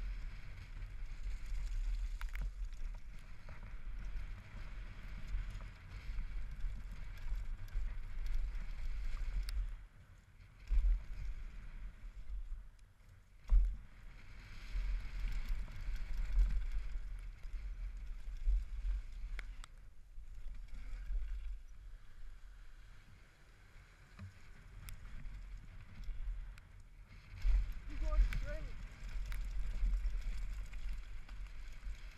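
Helmet-mounted action camera on a mountain bike running fast down a wet dirt trail: wind buffeting the microphone in an uneven low rumble, with tyre and trail noise and rattles over bumps. A sharp knock about 13 seconds in is the loudest moment.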